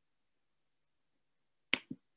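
Near silence, then near the end a sharp click followed a moment later by a second, softer click: a computer mouse or key press advancing the presentation slide.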